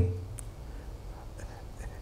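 Quiet room tone in a pause between a man's spoken phrases. The end of a phrase trails off at the very start, and there is one faint click about half a second in.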